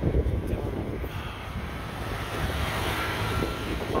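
A motor vehicle passing, its noise swelling and easing toward the end, over a low rumble of wind on the microphone.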